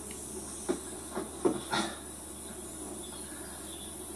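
Steady hiss of the recording's background noise, with a few short, faint clicks in the first two seconds.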